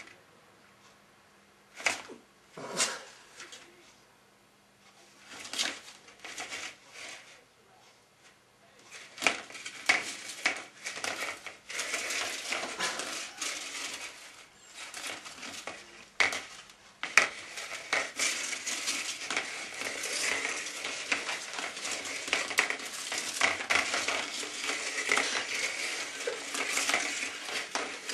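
Upturned plastic laundry basket knocking and scraping on a tiled floor, pushed around by a cat playing inside it. A few scattered knocks at first, then from about nine seconds in a continuous rattling scrape as the basket spins and slides across the tiles.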